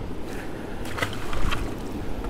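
Steady low rumble of wind and river around an open boat, with a few light knocks about a second apart.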